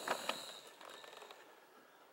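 A dog's claws clicking and scraping on a concrete floor as it rears up on its hind legs. The sharpest clicks come in the first moment, then fade to light scuffing.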